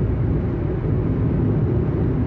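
Steady low rumble of road and engine noise inside a vehicle's cabin while driving on a motorway.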